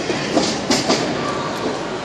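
Several sharp thuds from the wrestling ring, bunched about half a second to a second in, over a steady background of arena crowd voices.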